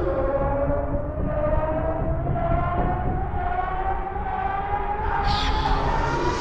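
Electronic music: a synth tone glides slowly upward in pitch like a siren sweep over a rumbling, noisy bed. A rush of high hiss swells near the end.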